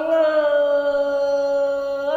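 A woman singing unaccompanied in the Thai khắp style, holding one long, slightly falling note.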